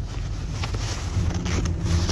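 Steady low rumble of engine and road noise inside a car's cabin, growing a little stronger near the end.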